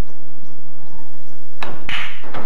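Pool break: a sharp click near the end, then a louder crack as the cue ball smashes into the racked red and yellow pool balls.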